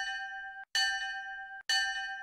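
A bell-like chime sounds three times, about once a second. Each note rings with a sharp attack and a few bright overtones, then cuts off abruptly before the next strike.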